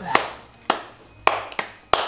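Hands smacking: five sharp claps or slaps in two seconds, irregularly spaced, the last three coming closer together.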